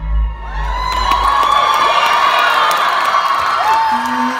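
Concert audience cheering and whooping, with many shrill whoops and whistles, right after the a cappella singing breaks off at the start.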